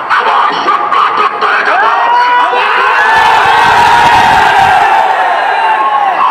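Large crowd of voices shouting together, swelling about two seconds in and holding loudly for several seconds before easing off near the end.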